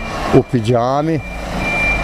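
A high-pitched beep sounding in short spells near the end, over a low steady rumble, after a brief stretch of a man's voice.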